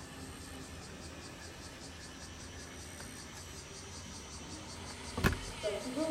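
Faint, steady outdoor background noise with no distinct source, broken about five seconds in by a single sharp knock.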